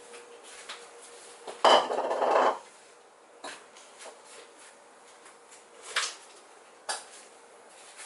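Kitchen dishes and metal utensils clattering: a loud rattle about a second long, about two seconds in, then a few single clinks.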